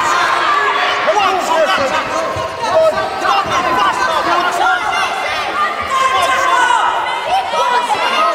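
Ringside crowd at a boxing bout shouting over one another, many voices overlapping without clear words.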